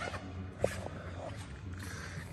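Low steady room hum with a light sharp click about two-thirds of a second in and a fainter one just after.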